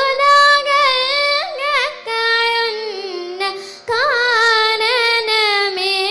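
A girl singing Carnatic music solo into a microphone, her voice sliding and oscillating on sustained notes with brief breaths between phrases, over a steady drone.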